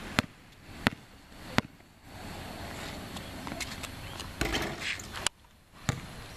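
Basketball bouncing on a concrete court: three dribbles about 0.7 s apart in the first two seconds, then a few more sharp thumps in the last two seconds.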